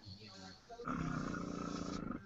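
Electric eBrush marker airbrush running with a steady buzz, starting a little under a second in, as it sprays alcohol-marker ink through a stencil onto fabric.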